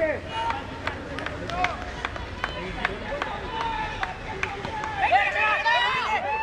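Cricket players calling and shouting to each other on the field, loudest about five seconds in, over scattered sharp clicks and taps.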